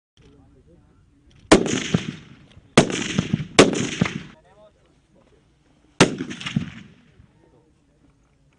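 Four sniper rifle shots while the rifles are being zeroed, each a sharp crack followed by a rolling echo that dies away over most of a second. The second and third come less than a second apart, and the last follows after a pause of over two seconds.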